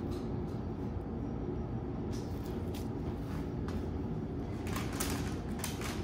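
Steady low background hum with a few soft knocks and clicks from hands handling soap, most of them shortly before the end.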